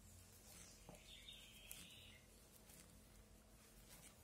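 Near silence: room tone with a few faint ticks and a faint high hiss lasting about a second, starting around one second in.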